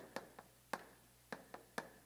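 Chalk writing on a chalkboard: a string of faint, sharp, irregular taps as the chalk strikes and lifts off the board, about seven in two seconds.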